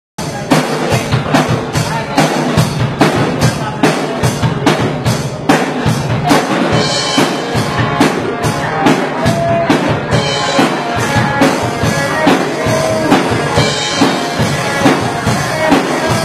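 Rock band playing electric guitars over a drum kit, with a fast, steady beat of kick and snare.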